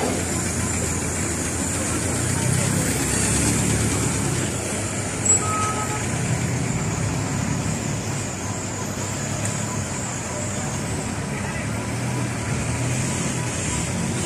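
Street traffic noise: vehicle engines running steadily, with a short beep about five seconds in.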